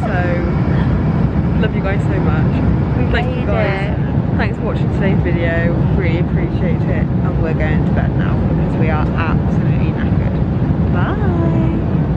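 Two women giggling and murmuring under their breath, in short bursts, over a loud steady low rumble.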